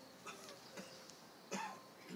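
Faint mouth and throat sounds from a man pausing between sentences close to a lapel microphone, with a short soft throat sound about one and a half seconds in.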